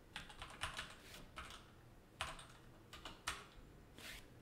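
Computer keyboard typing: short, irregular runs of soft key clicks with pauses between, as numbers are keyed into code.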